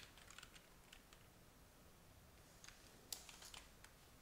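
Faint typing on a computer keyboard: a scattering of soft key clicks in the first second, a pause, then another short run of keystrokes about two and a half seconds in.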